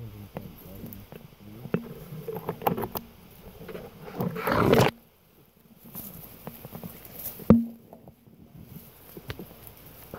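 Brush and twigs rustling and crackling as someone walks through forest undergrowth, branches scraping close past the microphone. A louder rustle swells about four seconds in and cuts off near five, and a sharp knock comes about seven and a half seconds in.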